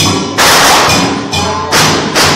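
Lion-dance percussion: a drum beating under loud cymbal crashes, one about half a second in that rings on, and another near the end.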